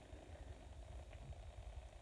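Near silence: faint room tone, a low uneven rumble with light hiss, and one small tick about a second in.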